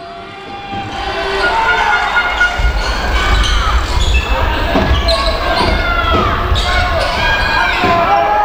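A basketball dribbled on a hardwood court during play, with repeated bounces under short high squeaks and voices on the court.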